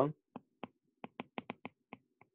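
Stylus tip tapping and clicking on a tablet's glass screen while handwriting: about eight short, sharp clicks at an uneven pace, coming faster in the second half.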